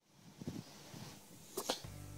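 Quiet room tone with a few faint, short clicks: one about half a second in and a couple more near the end.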